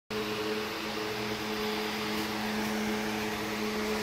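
Steady machine hum: a low drone with a few higher tones over a light hiss, unchanging, with no cutting or strikes.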